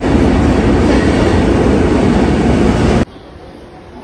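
Train running past at a station platform: a loud, steady rumble of wheels and rails that stops abruptly about three seconds in, leaving fainter station hall noise.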